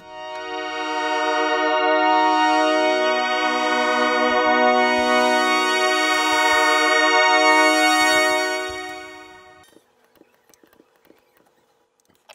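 A software synthesizer pad patch in FL Studio's Harmless plays a sustained chord. It swells in slowly over about two seconds, holds, then fades away over the last couple of seconds of the sound, near the end.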